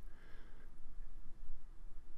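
Faint, steady low background noise with no distinct sound events.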